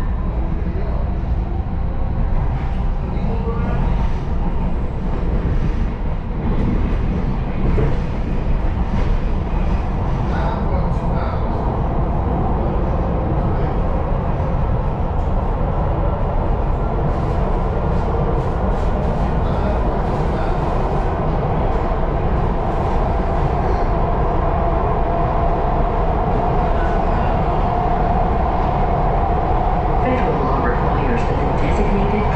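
Inside a MARTA heavy-rail subway car pulling out of a station and running along the track: a steady loud rumble of wheels and running gear, with a motor whine and scattered sharp clicks and rattles.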